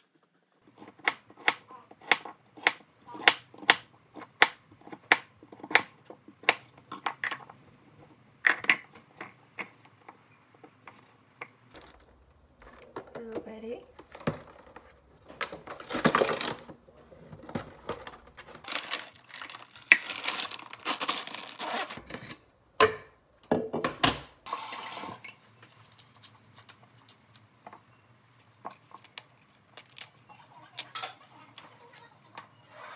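Kitchen knife chopping cucumber and carrot on a wooden cutting board: a run of sharp taps, about two a second, for the first nine seconds or so. Then irregular rustling and handling noise from about the middle to near the end as fruit and greens are loaded into a blender cup.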